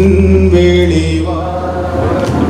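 Chant-like singing: a voice holds long notes that glide up into a sustained pitch, over a steady low drone.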